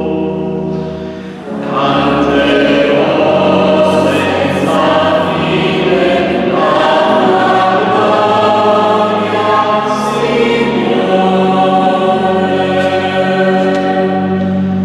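Mixed choir of women's and men's voices singing in harmony, softening briefly and then coming in fuller about a second and a half in, with long held chords.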